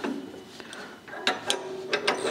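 Steel hitch pin being fitted through a tractor's lower lifting arm and an implement's linkage bracket: light metal handling noise, then two sharp metal clicks in the second half.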